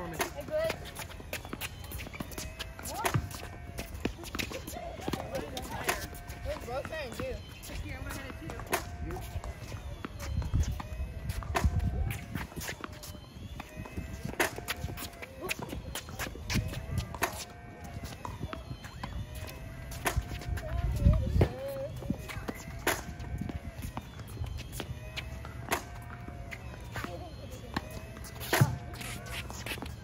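Tennis balls being struck by children's rackets and bouncing on a hard court: sharp pops coming every second or so, with background voices.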